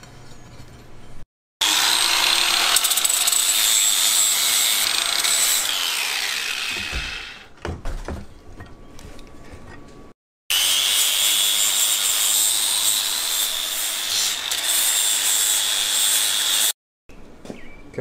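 A high-speed handheld power tool running with a steady high whine in two long stretches: it winds down about six seconds in, a few knocks follow, and it spins up again about ten seconds in. Brief gaps of dead silence break the sound.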